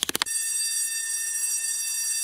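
A bell rings to mark the end of class. A quick rattle of clicks is followed, about a quarter second in, by a steady, high, even ring.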